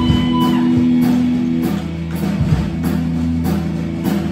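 Rock band playing live through a PA: electric guitar and bass hold sustained notes over a steady beat that hits about every two-thirds of a second, with a rising sliding tone at the start.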